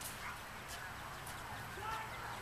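Faint distant calls over a steady outdoor background, with about three sharp knocks of a soccer ball on the hard court.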